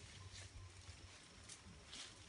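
Near silence in the forest, with a few faint, brief rustles.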